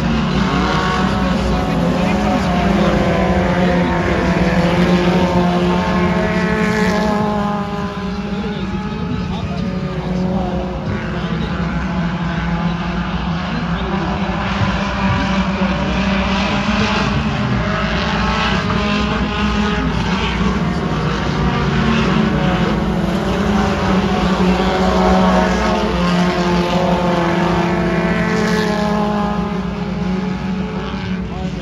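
Several small dirt-track race cars' engines running around the oval, with pitches that keep rising and falling as the cars accelerate and pass.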